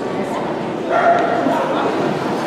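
A dog barks once, briefly, about a second in, over steady crowd talk in a large hall.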